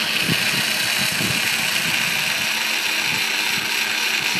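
Lenco electric trim tab actuator running steadily as it drives the trim tab plate on the boat's transom.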